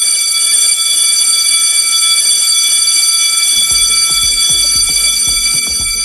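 An electric bell ringing steadily, high and metallic with many overtones, that stops suddenly at the end. Low thumps of a beat come in about halfway through.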